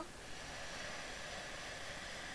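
A man's slow, deep inhale into the belly, heard as a steady hiss of drawn-in air.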